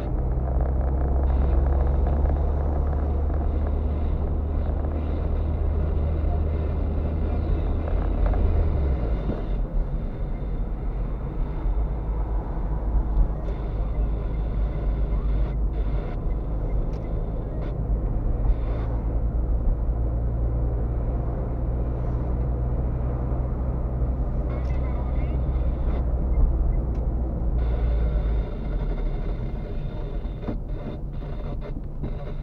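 Car interior driving noise: a steady low engine drone under tyre and road rumble. The engine note drops away about nine seconds in and comes back near the end.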